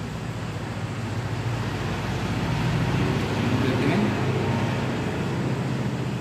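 Low, steady engine hum that grows louder toward the middle and eases off again, as of a motor vehicle passing.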